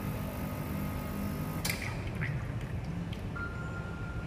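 La Spaziale Mini Vivaldi II espresso machine's pump running during a shot, then cutting off with a sharp click about one and a half seconds in as the shot is stopped. A few faint ticks and a thin steady tone follow.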